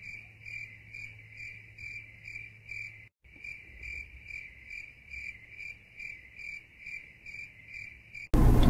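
Crickets chirping in an even rhythm, about three chirps a second, over a faint steady hum; the sound cuts out completely for a moment about three seconds in, then carries on without the hum.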